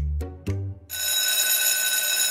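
Light background music, then about a second in a school bell starts ringing steadily, marking the start of class.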